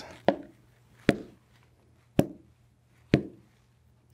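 Wooden chess pieces set down on a board, four separate knocks about a second apart as the pieces are moved back to an earlier position.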